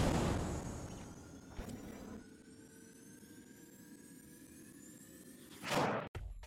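Intro sound effect: a whoosh that fades into a faint sustained synthetic shimmer of several slowly rising tones, closed by a second short whoosh near the end.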